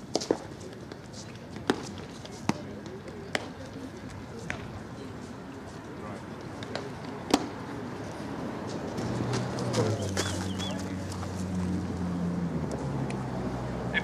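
Scattered sharp pops of baseballs striking leather gloves and bats at a practice field, a handful of single cracks several seconds apart, over faint background voices. A low steady hum comes in about nine seconds in.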